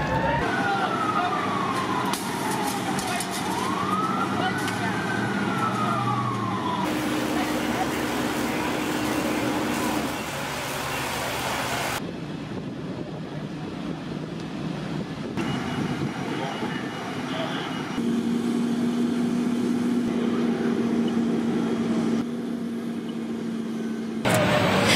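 Fire engine siren wailing, sweeping down in pitch and then rising and falling again over the first several seconds, over the steady noise of a fire scene. The sound then breaks off abruptly several times, with stretches of a steady low hum in between.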